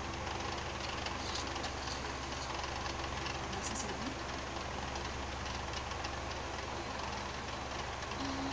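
Animated film soundtrack playing from a television speaker and picked up in the room: a steady rumbling noise with faint voices under it.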